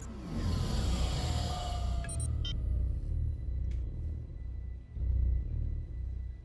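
Dark, tense film score over a deep, throbbing rumble, with a falling sweep in the first second and a few faint electronic clicks about two seconds in.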